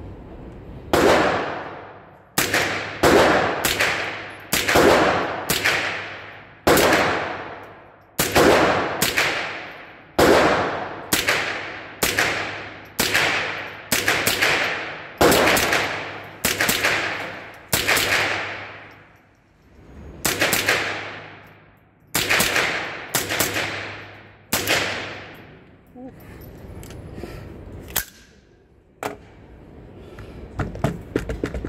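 AR-15-style rifle with a CMMG .22 LR conversion kit firing semi-automatic, about thirty shots at roughly one or two a second, each shot ringing out in the reverberant indoor range booth. The firing stops a few seconds before the end, followed by a few lighter clicks.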